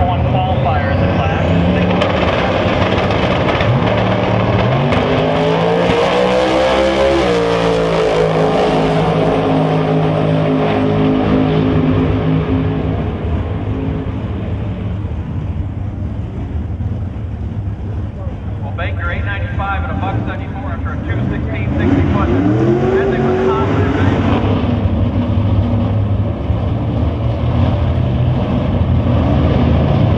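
Outlaw 10.5 drag cars making a pass: loud racing engines rise in pitch for a few seconds, hold, then fade as the cars run away down the strip. About twenty seconds in, another race engine revs up and drops back in short glides.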